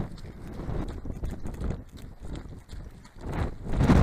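Running footsteps striking a stony dirt trail in a steady rhythm of about two strides a second. Wind rumbles on the microphone and grows louder near the end.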